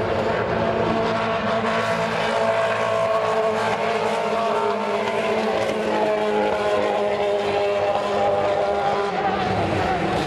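IRL IndyCar racing engines running at speed on the track, a steady loud drone whose pitch drifts slowly up and down.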